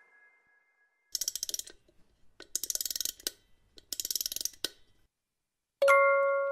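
Three short bursts of rapid mechanical clicking, each under a second, separated by brief pauses. Glockenspiel music fades out at the start and comes back just before the end.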